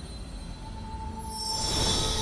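Fantasy-film magic sound effect for a spell being cast: a low rumble under a bright, shimmering swell that builds to its loudest near the end. A sustained musical drone comes in under it less than a second in.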